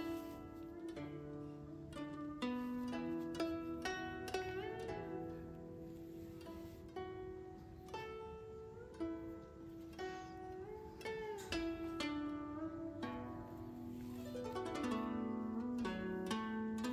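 Background music of a plucked zither: a slow, steady run of single plucked notes that ring and fade, some bent up or down in pitch after the pluck.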